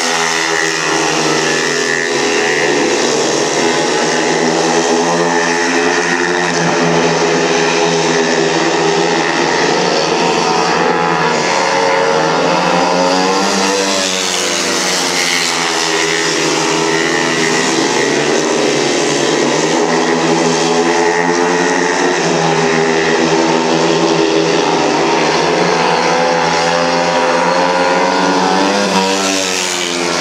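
Several speedway motorcycles racing on a dirt oval, their single-cylinder engines rising and falling in pitch again and again as the riders open and close the throttle around the laps.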